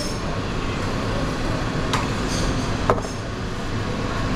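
Steady noise of a busy commercial kitchen, the hood ventilation and equipment running, with two light clicks of stainless-steel trays being handled about two and three seconds in.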